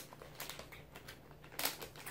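A plastic candy bag being handled: light crinkles and small ticks, with a louder cluster of crinkling near the end.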